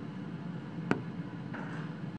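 Steady wind noise, with a single sharp click about a second in.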